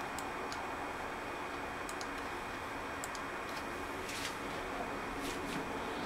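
A few faint, scattered clicks of a computer mouse as the laptop is being shut down, over a steady low room hiss.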